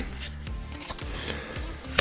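Soft background music, with faint rustling of trading cards being slid from one to the next in the hands.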